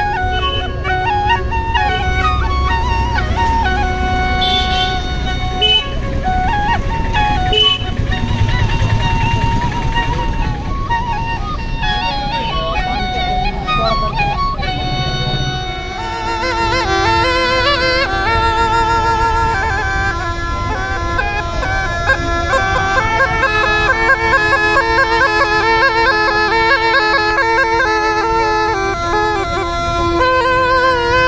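A Rajasthani double flute plays a folk melody, with low rumble underneath. About halfway through it gives way to a pungi, the snake charmer's gourd pipe, which plays a fast, trilling reedy melody over a steady unbroken drone.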